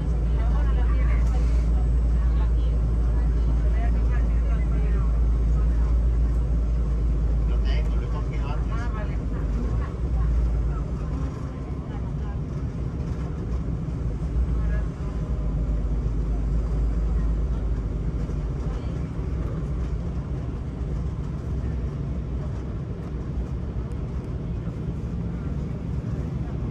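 Cabin noise of an Embraer 190 regional jet on final approach and landing: a steady deep rumble of engines and airflow that eases about ten seconds in, with faint voices in the cabin.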